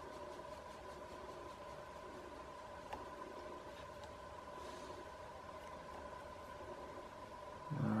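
Quiet room tone: a faint, steady hum of a few held tones, with one soft click about three seconds in.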